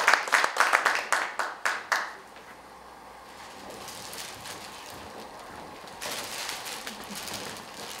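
Audience clapping for about two seconds, then dying away into low room noise.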